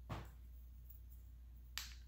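Two sharp clicks about a second and a half apart as a lipstick tube and its packaging are handled, over a faint steady low hum.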